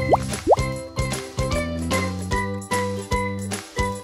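Cheerful children's background music with a steady beat. Near the start there are two quick rising 'bloop' sound effects, a fraction of a second apart.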